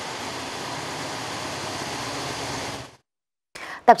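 Steady, even rushing background noise, with no distinct events in it, which cuts out about three seconds in. After a brief silence a woman begins speaking near the end.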